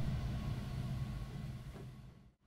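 The Estey reed organ's last chord dying away in the room's reverberation, leaving a low rumble of room noise that fades out near the end.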